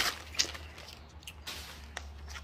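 Packaging being handled: a few short scattered rustles and taps, over a faint steady low hum.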